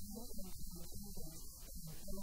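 A steady electrical hum, with choppy, garbled sounds over it in which no words can be made out.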